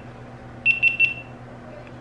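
Three quick high-pitched electronic beeps from a GoPro Hero5 camera mounted on a Karma Grip gimbal, sounding as its buttons are pressed.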